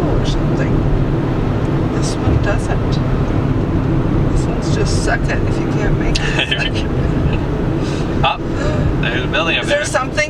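Car engine and tyre noise heard from inside the cabin while driving, a steady low rumble. Brief snatches of voice come in about six seconds in and again near the end.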